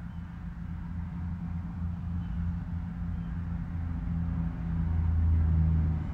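A steady low rumbling hum that swells louder over the last couple of seconds.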